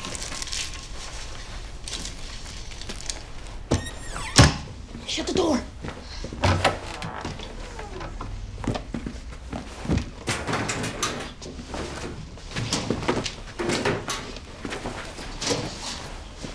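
Rummaging through cupboards and shelves: a string of knocks and bumps from things being handled and shifted, the loudest about four seconds in, with rustling of fabric as clothes are gathered.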